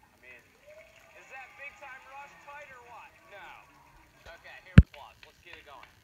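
Faint voices from a game show playing through laptop speakers. About five seconds in comes a single sharp click, much louder than the voices.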